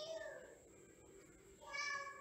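A cat meowing twice: a short call with a rising-then-falling pitch at the start, and another near the end.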